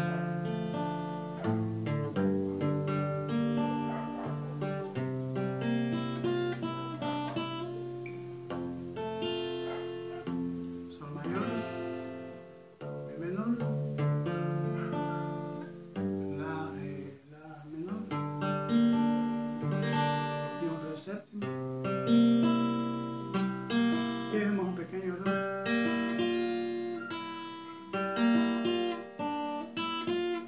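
Nylon-string classical guitar played in a steady rhythm pattern through the chords of G major (G, Em, Am, D7), picked and strummed with the fingers. There are short breaks in the playing near the middle.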